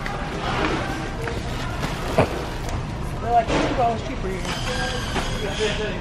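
Grocery store background: steady noise with faint distant voices and one sharp click about two seconds in.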